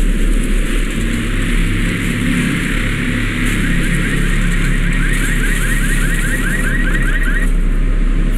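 Storm wind and heavy rain with the steady low hum of vehicle engines. From about three and a half seconds in, a rapid high chirping repeats about five times a second for around four seconds.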